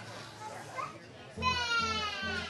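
Acoustic guitar played through a PA, starting about one and a half seconds in with a steady pulse of low notes about three times a second, over children's voices in the audience, one of them a loud high call that falls slightly.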